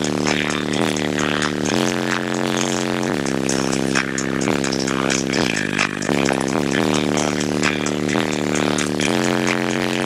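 Bass-heavy music played very loud through a car stereo's three 21-inch subwoofers, heard from inside the car's cabin. Deep bass notes change about once a second, with no let-up in level.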